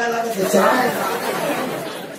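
Speech: a man talking in Marathi into a microphone, dying down near the end.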